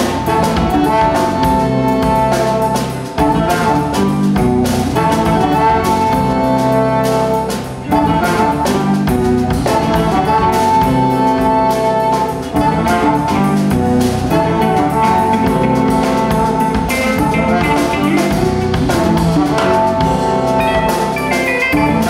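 Live band playing an instrumental jazz-rock piece: electric guitar, violin and drum kit, with sustained melody notes over steady drumming. The sound dips briefly a few times.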